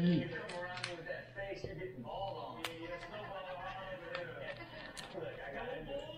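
Faint voices talking in the background, with a few light clicks.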